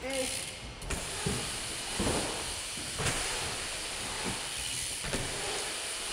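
BMX bike tyres rolling around a skate bowl: a steady hiss, with a few faint knocks.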